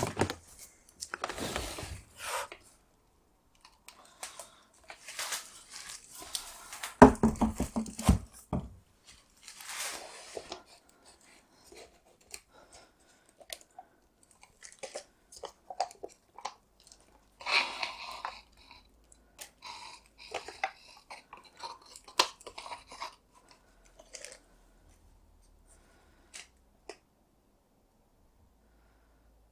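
Handling sounds of a flip-cup acrylic pour. A loud run of knocks about seven seconds in is followed by scattered crinkles, taps and clicks as disposable plastic cups are worked and lifted off the wet canvas.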